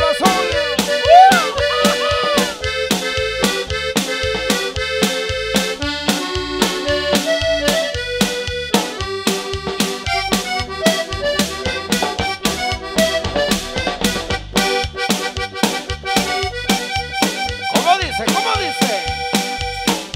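Live norteño band music: an accordion plays a stepping melody of held notes over bass guitar and a steady drum beat of about two strokes a second, with no lead vocal line.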